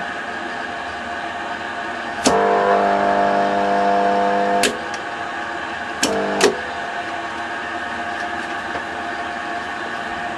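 A steady electrical hum. About two seconds in, a louder buzz switches on with a click, runs for about two and a half seconds and cuts off with a click. About six seconds in, a second buzz of about half a second starts and stops with clicks. This is the kind of mains buzz that an AC relay or solenoid coil makes while it is energised.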